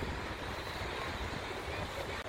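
Outdoor background noise after the music stops: a low, fluctuating rumble of wind on the microphone, with distant road traffic.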